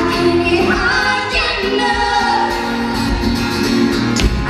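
Live acoustic song: an acoustic guitar playing under amplified singing, with a woman's voice on lead holding long sung notes.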